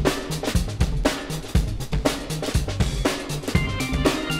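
Band recording driven by a full drum kit: kick drum and snare hits in a steady, quick beat with the rest of the band underneath.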